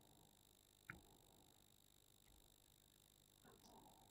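Near silence: room tone, with one faint brief click about a second in.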